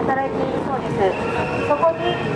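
A woman's voice speaking through a street public-address loudspeaker, with a steady tone running underneath.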